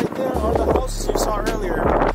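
Background music over the rolling noise of a dual belt-drive electric skateboard riding on asphalt.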